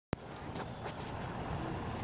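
A click as the recording starts, then a steady outdoor rumble and hiss that grows slightly louder, with a low vehicle-like drone in it.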